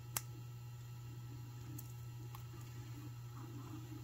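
A sharp metallic click just after the start as a small jump ring is worked shut between two pairs of jewelry pliers, followed by a few faint ticks and soft handling of the chain over a steady low hum.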